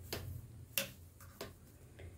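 Wooden knitting needles clicking together while knit stitches are worked, three light clicks about two-thirds of a second apart.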